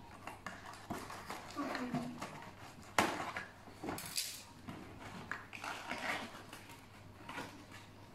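Light handling noise: a kitchen knife tapping and scraping on a small cardboard box as it is cut open, with scattered clicks and one sharp click about three seconds in.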